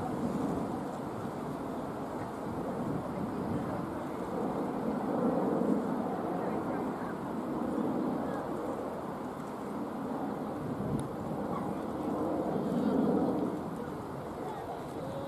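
Wind buffeting the microphone over open-air ambience, a steady low rush that swells and fades, with faint, indistinct voices in the distance.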